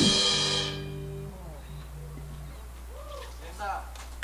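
A live reggae band's final chord ringing out: cymbals wash away within the first second and a low bass note holds for about a second and a half. Then a steady amplifier hum, with faint voices near the end.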